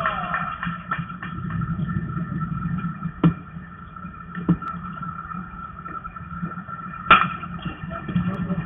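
Outdoor baseball-field ambience with a steady background hum, broken by a few sharp, short knocks, the loudest about seven seconds in.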